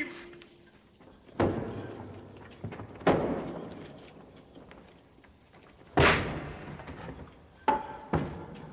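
Three heavy, sudden thuds with long echoing decays, spaced a second and a half to three seconds apart, then a smaller knock near the end: a sealed lid cracking and shifting as it is heaved free and its seal breaks.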